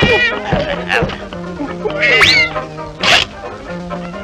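Early-1930s cartoon soundtrack: band music with high, wavering cartoon voice and sound effects over it. About two seconds in comes a high cry that rises and falls. About three seconds in there is a short crash-like noise.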